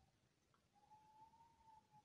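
Near silence: room tone, with a faint, thin, steady tone starting a little under a second in.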